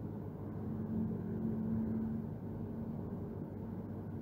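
Steady low background rumble with a faint hum that comes in about half a second in and fades a couple of seconds later.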